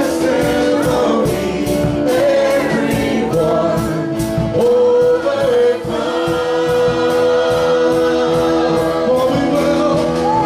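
Live gospel worship music: a band playing while a group of voices sings together, holding one long note through the second half, over a steady beat of about three ticks a second.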